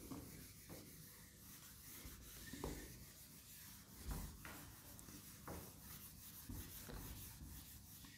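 Faint rubbing of a handheld duster wiping marker writing off a whiteboard, in repeated strokes.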